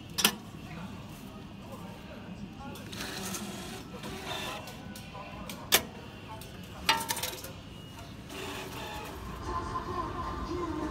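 Subway ticket vending machine taking cash and dispensing a ticket: three sharp clicks, one just after the start, one about six seconds in and a quick rattle of several a second later, over a steady hubbub of voices.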